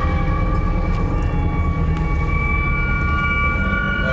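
Eerie drone underscore: several long held high tones over a deep, steady low rumble, with a further tone entering about a second in and another near the end.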